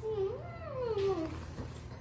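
A toddler's drawn-out whining cry, rising and then falling in pitch, lasting about a second and a half.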